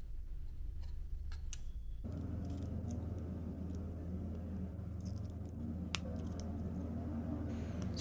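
Small metal screws being handled and fitted through the holes of a metal CPU-cooler mounting bracket. A few faint, light clicks sound over a steady low hum.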